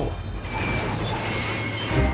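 Cartoon sound-effect bed: a steady rushing noise over a low rumble, with no words.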